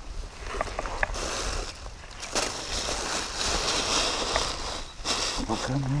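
Dry grass and reeds rustling and crackling as someone moves and reaches down into them, in three stretches with a few sharp ticks in the first.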